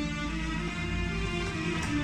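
Korg Pa-series oriental arranger keyboard playing the melody of a song's instrumental intro in maqam rast, with held notes that change pitch.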